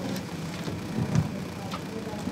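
Microphone handling noise: rustling and a few clicks, with one low thump about a second in, over a steady low hum.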